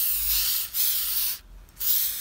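Aerosol spray can hissing onto a tree trunk in three short bursts. The second stops about a second and a half in, and the third starts near the end.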